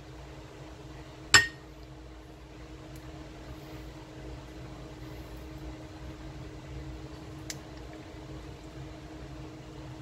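A ladle clinks once sharply against a ceramic bowl about a second in, ringing briefly, with a faint tick later, as creamy chowder is ladled into the bowl. A steady low hum runs underneath.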